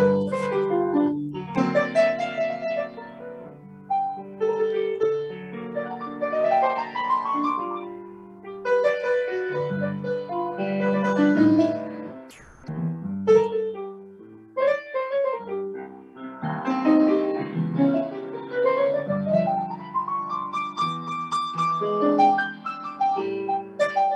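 Solo piano played on a keyboard, a short improvised jam in phrases with rising runs and brief pauses between them.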